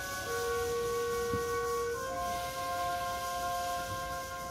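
Eighth-grade concert band playing slow, sustained wind chords, the harmony moving to a new chord about two seconds in.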